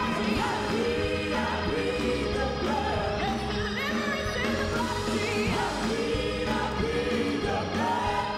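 Live gospel worship music: several vocalists singing together into microphones over a band with keyboard, the voices sliding and bending through the melody at a steady, full level.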